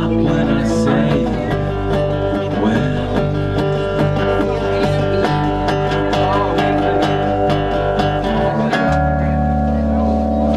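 Live acoustic band playing an instrumental passage: acoustic guitar strumming over electric bass, settling into long held notes near the end.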